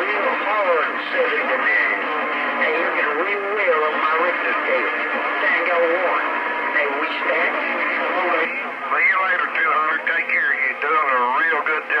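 Distant voices coming through a Stryker CB radio's speaker on skip, muffled and unintelligible, with steady whistling tones running underneath.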